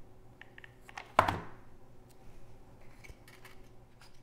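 Handling noise from small parts and a hot glue gun on a wooden board: one sharp knock about a second in, with a few faint clicks around it.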